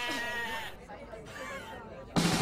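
A wavering, voice-like call, heard twice: the first louder and breaking off a little before the middle, the second fainter near the end.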